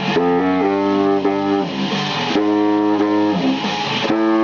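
Yamaha YBS-62 baritone saxophone playing a line of notes that move in steps, one held for over a second in the middle. It plays along with a rock recording with electric guitars.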